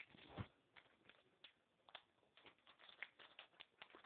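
Near silence with faint, scattered crackles and clicks, a little louder in the first half-second: the rustle of a plastic blind-bag pack being handled and opened.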